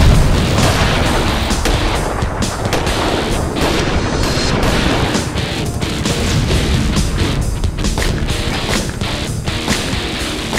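Action-film music score mixed with added explosion and gunshot sound effects, loudest in a boom right at the start, then a dense run of music and shots.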